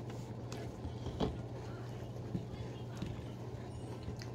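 Quiet chewing of a spoonful of cereal that has soaked in milk for about a minute, with a few soft clicks and one sharper click about a second in, over a steady low hum.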